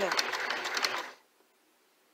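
Domestic sewing machine running a zigzag stitch to sew on a button, with rapid needle strokes. It stops abruptly about a second in.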